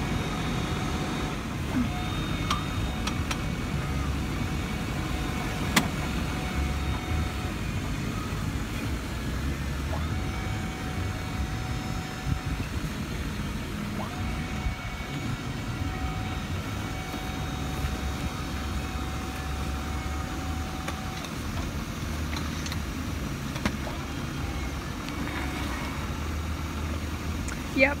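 Steady low rumble of a truck's engine idling, with a faint thin whine through the middle stretch and a single sharp click about six seconds in.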